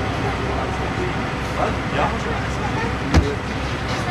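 Tram in motion, heard from the driver's cab: a steady running rumble of wheels and motors, with one sharp knock a little after three seconds in.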